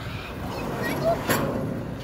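Playground zip line trolley running along its steel cable, a steady rumble that builds as the rider picks up speed, with a sharp knock a little past a second in. Faint children's voices sound in the background.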